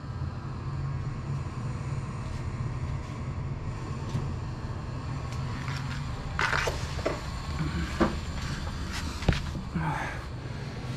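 A steady low hum, with rustling and a few knocks from the camera being handled and swung around starting about six seconds in, and a sharp click near the end.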